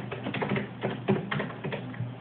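Irregular clicking taps on a laptop keyboard, about a dozen in quick succession, close to the microphone.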